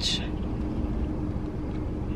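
Steady low rumble and hum inside a car cabin, with a faint constant pitched drone running through it.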